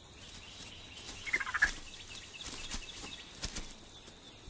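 A short warbling animal call about a second and a half in, followed by faint scattered crackles.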